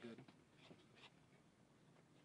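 Faint scratching of a gold paint pen tip as a signature is written.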